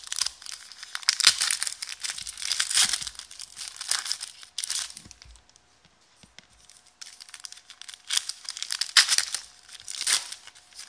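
A shiny foil trading-card pack being torn open and crinkled by hand, in two spells of tearing and rustling with a quieter gap of about two seconds in the middle.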